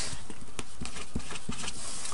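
A few light taps of a pen on paper as long division is written out, over a steady low hum.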